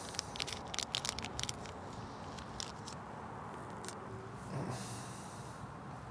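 Faint crinkling and clicking of a small plastic packet and thin steel leader wire being handled, busiest in the first second and a half, then a few isolated clicks over a low steady background noise.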